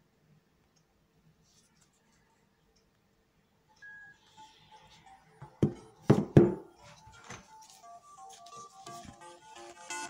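Near silence at first, then, about halfway in, a few sharp knocks and thuds from a smartphone being handled on a table; these are the loudest sounds. Electronic music then starts quietly on the phone as a run of short melodic notes, growing louder toward the end.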